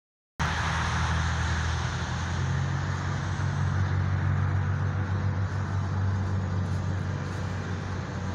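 Steady low motor-vehicle engine hum with road traffic noise; the sound drops out completely for a split second at the very start.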